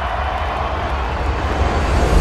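A dense swell of noise over a deep bass rumble, slowly growing louder toward the end: the closing sound effect of the song track, just before it cuts out.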